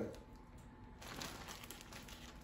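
Faint crinkling of a gallon plastic zip bag, with soft taps as cauliflower florets are dropped into it by hand.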